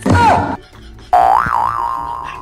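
Comic cartoon sound effects: a short burst with a falling pitch, then about a second in a springy, boing-like tone that wobbles up and down before settling and fading.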